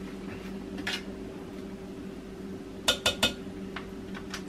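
Kitchenware clinking as seasonings are handled and added to a slow cooker: a light click about a second in, then three quick sharp clinks about three seconds in, over a steady low hum.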